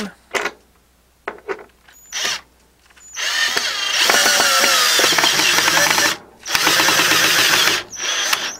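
Cordless drill driving a bugle-head screw into a wooden board. A few short clicks come first; about three seconds in the drill starts and runs steadily for about three seconds, stops briefly, then runs again for over a second as the screw is driven home.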